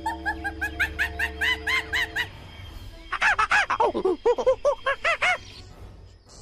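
An animal calling in two quick runs of short calls, each rising and falling in pitch, about five a second. The second run is louder and some of its calls dip lower. A steady music drone plays under the first run.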